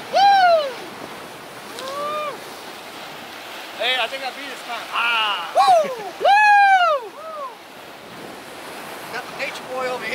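Surf washing against jetty rocks, with several loud rising-and-falling pitched calls over it, the longest about two-thirds of the way through.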